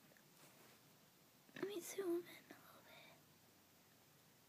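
Quiet room tone, with a boy saying a couple of words softly about a second and a half in.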